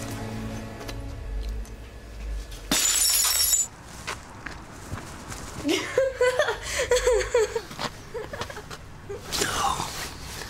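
A glass bottle smashing: one loud crash of breaking glass about three seconds in.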